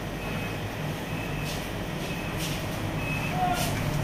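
Steady low mechanical hum, with three short high-pitched beeps spread through it and a lower short tone and a faint click near the end.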